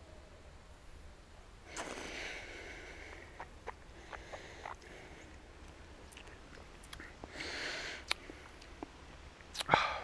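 Faint breathing and mouth sounds of a man tasting a sip of whiskey: a breathy exhale about two seconds in and another near eight seconds, with scattered small lip and tongue clicks between them.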